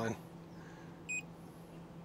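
Bluetti AC200P portable power station's touchscreen giving one short, high beep about a second in as a finger taps it.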